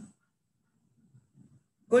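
Mostly a pause in a man's speech: the end of a spoken word fades out, then near silence broken only by a few faint low sounds. A man's voice starts speaking again at the very end.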